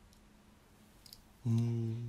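Faint clicks of small die-cast toy cars being handled on a bed. About one and a half seconds in, an adult voice holds a low, steady note.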